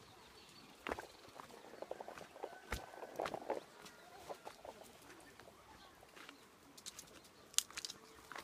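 Faint footsteps crunching over stones and dry leaves on a dirt slope, heard as scattered short clicks, with a few brief calls from chickens.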